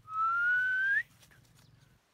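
One long human whistle of about a second, rising slowly in pitch and flicking up sharply at the end.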